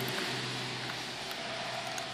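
Steady background hum and hiss, with a couple of faint clicks from a box-end wrench on the engine's rocker-arm lock nuts.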